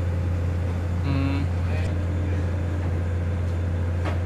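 Small oil tanker's engine running with a steady low drone, heard from inside the wheelhouse.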